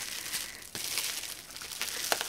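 Packaging crinkling and rustling as it is handled by hand, with a few small clicks.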